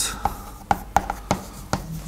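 Chalk writing on a blackboard: a run of sharp taps and short scrapes, about five strokes in two seconds.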